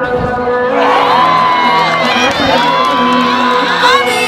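Spectators cheering and shouting for a goal, starting about a second in, over background music.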